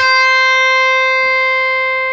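Electric guitar's high E string, pre-bent a half step at the 7th fret and then picked once. The note rings at a steady pitch with no audible bend, slowly fading.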